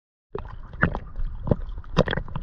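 Small sea waves sloshing and splashing against an action camera held at the waterline: a steady wash with a few louder splashes. The sound starts about a third of a second in.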